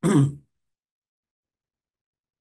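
A man's single short cough, clearing his throat, right at the start, with his hand at his mouth.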